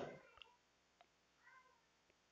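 Near silence: room tone, with two faint clicks and, about one and a half seconds in, one faint short high call like an animal's.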